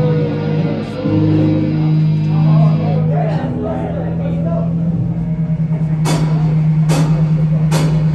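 Live rock band playing: electric guitars and bass hold long, ringing notes, then a wavering pulse sets in, and three sharp drum hits land about a second apart near the end.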